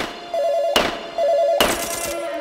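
Drill beat with a rapid two-note warble like a telephone ring, repeated in short bursts between hard drum hits that fall about every 0.85 seconds.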